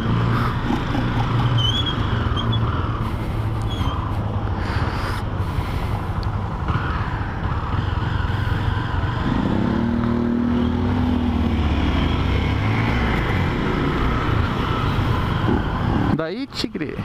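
Motorcycle engines running in city traffic, with steady wind and road noise on the rider's camera. The bikes sit briefly at a stop, then pull away, with an engine's pitch rising about ten seconds in.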